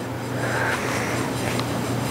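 Steady room background noise: an even hiss with a low steady hum underneath and no distinct events.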